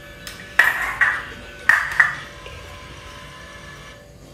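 Four sharp clinks with short ringing, in two quick pairs, as utensils strike a small porcelain bowl.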